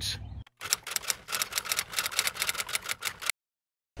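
A rapid run of sharp, even clicks, about ten a second, lasting under three seconds and cutting off suddenly. It is an edited-in transition sound between clips.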